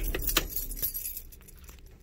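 Keys jingling in a quick run of light clicks over about the first second, then dying away to a faint low hum.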